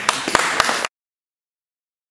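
Audience applauding with sharp individual claps. It cuts off abruptly a little under a second in.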